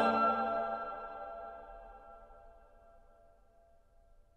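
A cappella mixed choir cutting off a held chord, the chord dying away in the church's long reverberation over about two to three seconds.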